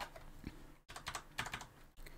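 Computer keyboard keystrokes while text is edited in a terminal: a couple of separate key presses, then a quick run of taps in the second half.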